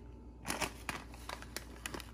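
Plastic packet of chocolate drink powder crinkling in a handful of short rustles as a spoon scoops powder out of it.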